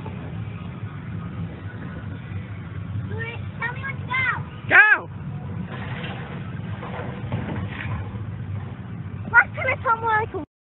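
A child's high-pitched voice giving short cries that rise and fall in pitch, the loudest about five seconds in and a few more near the end, over a steady low rumble.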